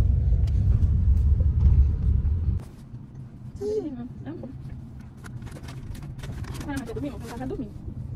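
Low rumble of a car in motion heard from the back seat, loud for the first two and a half seconds, then cutting abruptly to a quieter cabin hum with a few short vocal sounds and light clicks.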